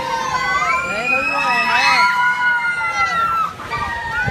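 Many riders on a spinning chair-swing ride screaming and shouting together: overlapping long, wavering, high-pitched cries.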